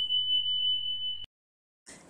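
A steady, high single-pitched electronic beep over a title-card transition, cut off suddenly about 1.3 seconds in, followed by half a second of dead silence.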